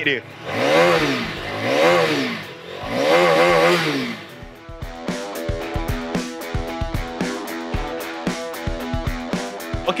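Modenas Dominar 250's 248.77cc single-cylinder engine revved three times through its twin-tip exhaust, each rev rising and falling in pitch over about a second. From about four and a half seconds in, background music with a steady beat takes over.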